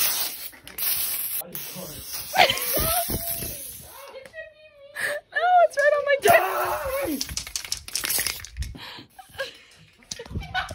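Teenagers shrieking and laughing in a playful scuffle, with high-pitched squeals including one held note in the middle. The camera is rubbed and knocked as it is grabbed and jostled.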